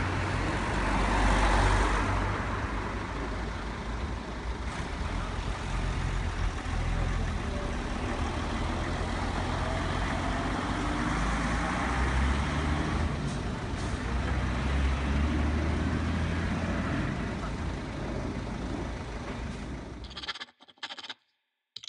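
Road traffic: motor vehicles passing close by, engine rumble and tyre noise rising as each goes past, with one pass swelling about a second or two in.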